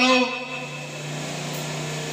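A man's held chanted syllable into a handheld microphone ends just after the start. What remains is a steady low hum with faint hiss.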